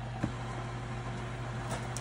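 A steady low hum under a soft knock about a quarter second in and a few light taps near the end, from a glass measuring cup and a spatula against a stainless steel mixing bowl as meringue is folded into cheesecake batter.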